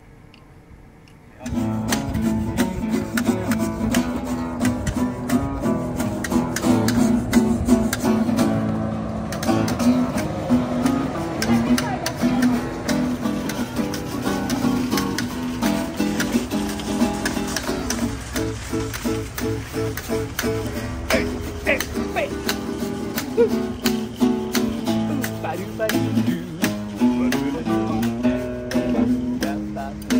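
Acoustic guitar strumming a song, starting suddenly about a second and a half in, with a voice along with it.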